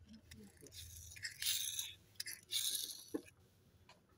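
Thin plastic wrapping crinkling in two short bursts as a small toy car is unwrapped by hand, with a few light clicks of plastic handling.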